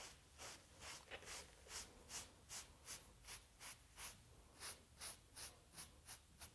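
Bristle brush swept in quick, even strokes over strips of dampened fox fur: faint swishes, about two to three a second.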